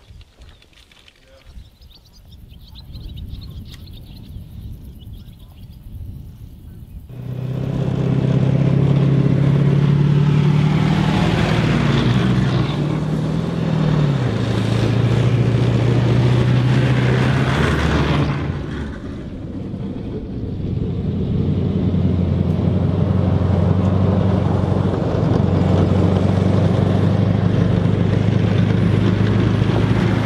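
A British Warrior tracked infantry fighting vehicle driving along a dirt track: its diesel engine running hard with the rumble of its running gear, loud from about seven seconds in, a fainter rumble before that. The engine note shifts in pitch a few seconds after it comes in and eases briefly about two thirds through before picking up again.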